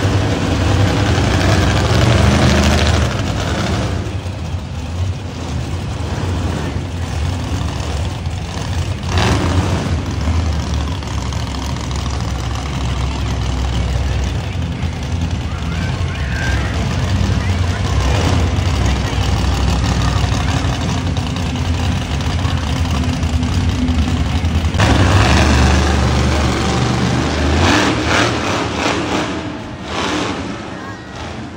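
Monster truck engines running and revving, loudest in the first three seconds and again from about 25 seconds in.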